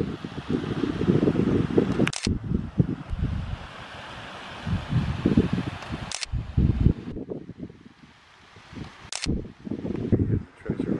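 Wind buffeting the camera microphone in uneven gusts, with a faint hiss behind. Three short sharp clicks come about two, six and nine seconds in.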